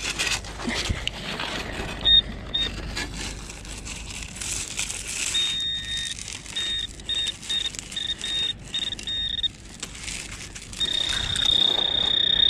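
A metal detector's high-pitched target tone, sounding as a string of short beeps of varying length and then one long steady tone near the end as it closes on a buried metal object. Footsteps crunch on beach shingle underneath.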